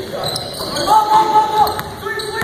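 Basketball game in a gym: a basketball bouncing on the hardwood floor amid the echo of the hall, with one held, high-pitched squeal lasting most of a second near the middle.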